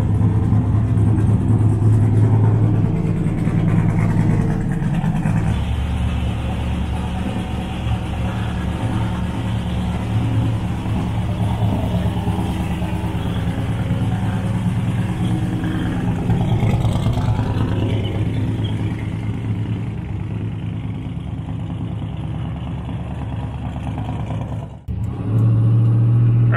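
Twin-turbo LSX V8 in a Buick Skylark drag car idling steadily with a choppy, rhythmic note; the low pitch settles a little lower a few seconds in.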